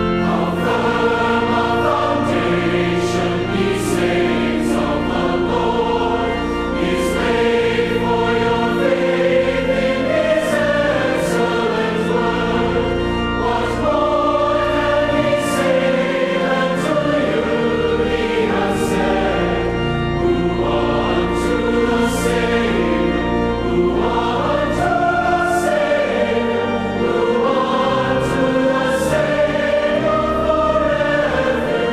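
Background music: a choir singing a hymn, the voices held and moving in long sustained phrases.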